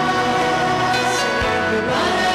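Live church worship music: a band with acoustic guitar and singers at microphones playing a slow worship song, with a low thump about one and a half seconds in.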